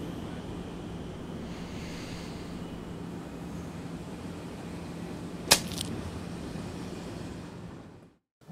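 Steady film-soundtrack background ambience with a low hum, broken once by a short, sharp swish about five and a half seconds in. The sound fades out just before the end.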